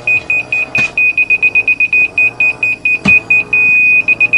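Laser receiver on a grade rod beeping as it picks up a rotating laser level's beam: rapid beeps at one high pitch, changing to a continuous tone about three and a half seconds in, the receiver's signal that it sits on grade with the beam. Two short knocks, about one and three seconds in.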